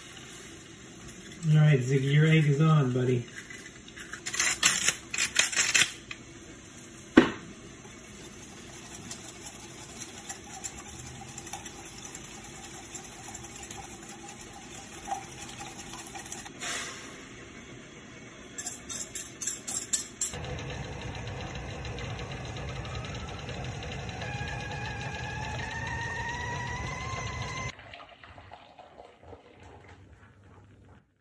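Kitchen sounds while making lunch: a brief voice about two seconds in, bursts of clattering dishes and utensils, and a single sharp knock. Then a water tap runs into a vessel for about seven seconds, its pitch rising slowly as the vessel fills, before the tap is shut off.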